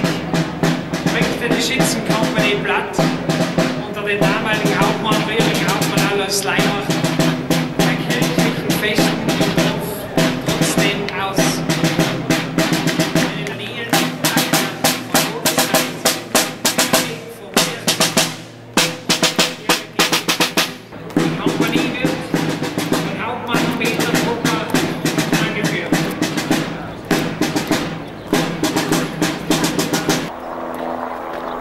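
Marching band playing a march with snare drum and bass drum. About halfway through, the melody drops out and the drums keep the beat alone for several seconds, then the band comes back in.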